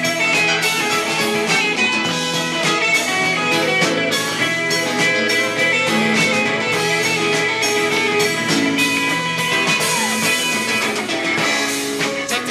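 Live electric band playing an instrumental passage: electric guitars and bass over a drum kit, loud and steady.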